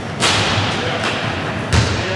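A basketball strikes the basket on a shot with a sharp, echoing crack about a quarter second in. About a second and a half later it bounces once on the wooden gym floor with a duller thud.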